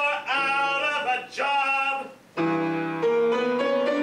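A solo operatic voice sings short phrases with vibrato over piano accompaniment. About halfway through, the voice stops and the piano carries on alone with held chords.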